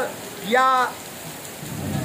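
A man's voice saying one short word about half a second in, then a pause filled by a steady hiss of background noise.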